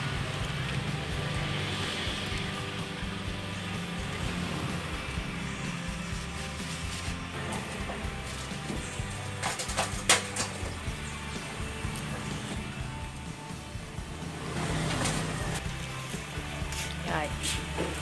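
Background music with sustained low notes, and a few sharp clicks of a knife cutting luffa into chunks, the loudest about ten seconds in.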